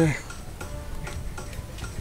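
Quiet background film music with a soft, regular ticking beat, heard in a pause between a man's spoken words. The end of a drawn-out "uh" is heard at the very start.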